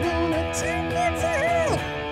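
Semi-hollow electric guitar strumming power chords, the chords ringing on.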